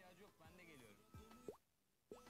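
Very faint voices and music, with a few short plops, dropping to near silence about one and a half seconds in as the film's playback is paused.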